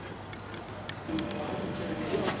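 Scattered light clicks over a steady low hum, with a voice starting about a second in.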